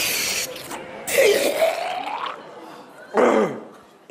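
A short hiss of gas squirted from a small canister into the mouth, followed by gurgling throat noises as the gas is swallowed, and a loud short voiced sound falling in pitch near the end.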